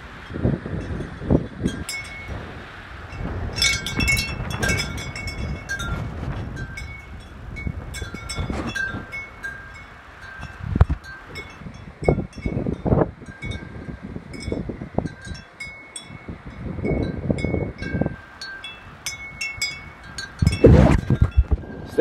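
Wind chimes ringing in irregular, scattered strikes in gusty wind, with wind rumbling on the microphone in pulses.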